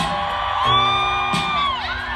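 Live music from a festival stage: a high note held for just over a second over steady bass notes, with whoops from the crowd.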